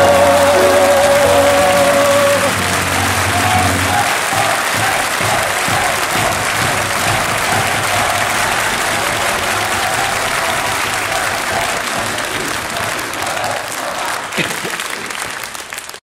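The song's last held note and chord die away in the first few seconds, and an audience applauds, with voices calling out in the crowd; the applause fades out near the end.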